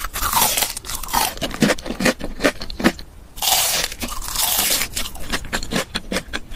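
Biting and chewing crispy breaded fried chicken: a run of sharp, crackling crunches, with two denser bursts of crunching, one at the start and one about halfway through.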